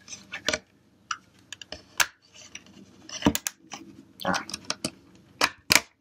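Plastic clicks and snaps of a LifeProof nuud waterproof iPhone 6 case being pried apart by hand as its snap edges release, a scatter of sharp clicks with two close together near the end. A short exclaimed "ah" about four seconds in.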